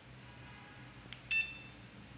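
Power button of an 880 dog training collar's receiver clicking faintly, then the receiver giving one short, high electronic beep as it switches on.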